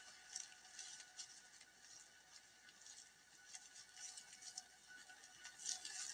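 Near silence, with a few faint, scattered soft ticks.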